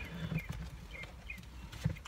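A puppy yelping faintly a few times in short, high squeaks, over a low background rumble.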